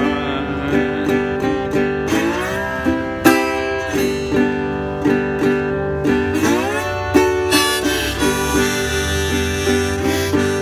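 Delta blues instrumental break: a harmonica in a neck rack carries the melody over a single-cone metal-body resonator guitar played with a slide. Sustained notes, with a couple of upward pitch bends.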